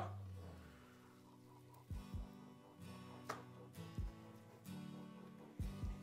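Faint background music with sustained notes, plucked guitar among them, and a few soft low thumps scattered through.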